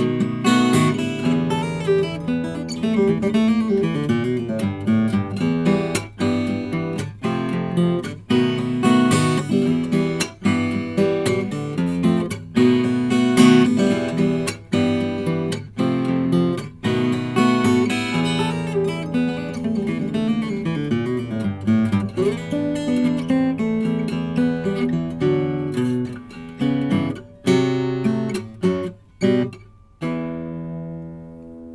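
Acoustic guitar played fingerstyle: a bluesy instrumental with a steady bass under plucked melody notes and many sharp, percussive attacks. Near the end it thins to a few separated notes and closes on a chord left ringing.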